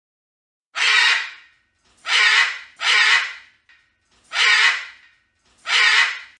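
Macaw giving five loud, harsh squawks at uneven intervals of about a second, each call fading out quickly.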